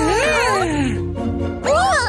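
Cartoon cat character's voice making wordless meow-like sounds, a long falling mew and then a shorter rising one near the end, over children's background music.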